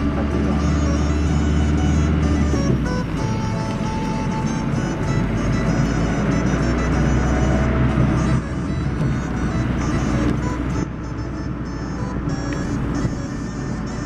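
Car driving, with a steady low engine and road drone, loudest in the first few seconds. Many short, high, tinkling tones come and go over it.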